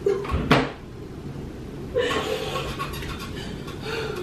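A single sharp knock of something being shut indoors, like a door or cupboard, about half a second in. Quieter rustling and faint voice-like crying sounds follow from about halfway through.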